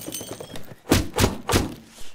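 A cardboard parcel marked as holding glass shaken beside the ear, its contents knocking against the box three times in quick succession.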